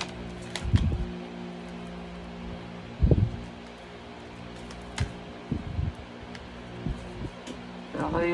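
A deck of cards being shuffled and handled, with short sharp ticks as cards snap and flick and two soft thumps, about a second in and about three seconds in, as cards land on the table. A steady hum runs underneath.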